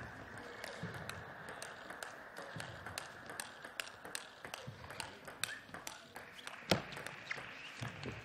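Table tennis rally: a celluloid ball clicking off bats and the table in quick, uneven alternation, over the steady hum of an indoor hall. One louder knock comes about two-thirds of the way through.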